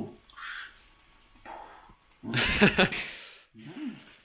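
A man laughing in several bursts, the loudest just past the middle.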